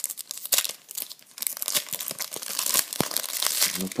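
Foil wrapper of a Panini Euro 2012 trading-card sachet being torn open and crinkled by hand, a run of many small crackles, with a sharp click about three seconds in.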